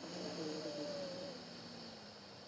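A slow, controlled inhale through one nostril, the other held shut by a thumb, in alternate-nostril breathing: a soft steady hiss of air through the nose that starts at once and slowly tapers off.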